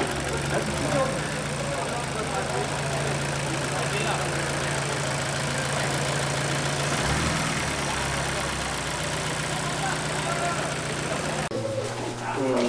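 Turbocharged Honda K-series four-cylinder idling steadily, with a brief change in its note about seven seconds in.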